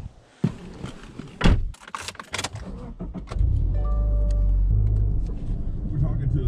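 Clicks and knocks of keys and the door as the driver gets into a Subaru Outback. A little over three seconds in, the engine starts and settles into a steady low rumble through its aftermarket exhaust.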